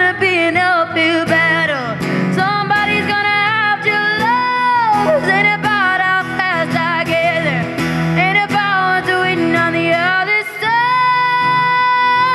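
A young woman singing a pop ballad over a strummed acoustic guitar, her voice sliding through wordless runs and holding long high notes.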